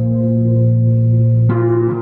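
Rhodes Mark I electric piano played through a multi-effects pedal: a sustained low note and chord keep ringing, and a new chord is struck about one and a half seconds in.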